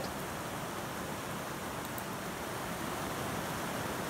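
Steady rain on the plastic sheeting of a polytunnel greenhouse, an even hiss.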